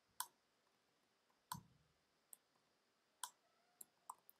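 Five faint, separate computer keyboard key clicks, spread unevenly over a few seconds, during code editing.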